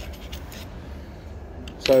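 Faint light clicks and scrapes of a small metal Allen key being handled and slid across an MDF spoilboard, over a steady low hum.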